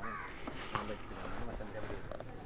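A crow cawing, faint, over low outdoor background noise.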